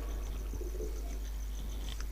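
Quiet pause in a speech over a microphone: room tone with a steady low hum, and a faint low call about half a second in.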